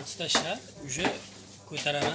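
Indistinct voices in a room, with a couple of sharp clinks, about a third of a second in and again about a second in.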